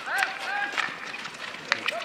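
Field hockey play: a player's high-pitched shout carries across the pitch, then a sharp click near the end, typical of a stick striking the ball.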